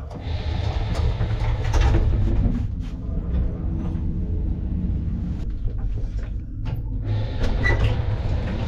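Old passenger elevator running: a steady low rumble as the cab travels, with scattered clicks and knocks, and the doors opening near the end.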